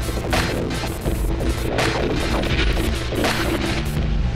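Electronic music: a droning bass with sharp percussive hits about twice a second.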